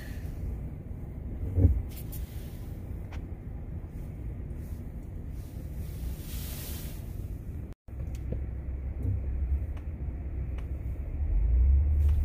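Low steady rumble of tyres and road noise heard from inside a quiet electric car moving through city traffic. There is a single knock about a second and a half in, a brief hiss near the middle, and the rumble swells near the end.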